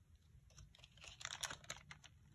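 Faint crinkling and small clicks of a single-dose paper-foil first-aid packet being picked up and handled, starting about halfway through.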